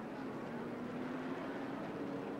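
Field of NASCAR Truck Series V8 race trucks running together at speed, a steady engine drone.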